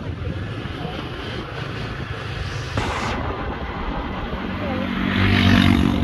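Road traffic heard from a moving vehicle: a steady low rumble of engines and tyres. Near the end a passing vehicle's engine hum swells to the loudest point.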